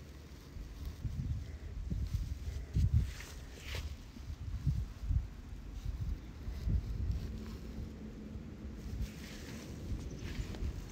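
Wind buffeting the microphone: an uneven, gusty low rumble that comes and goes, with a light rustle now and then.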